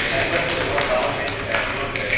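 A man speaking through a lectern microphone, with a few faint short ticks in the background.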